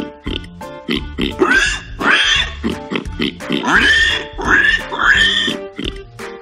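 Warthog grunting and squealing in a run of about six short calls, each arching in pitch, over upbeat children's background music with a steady beat.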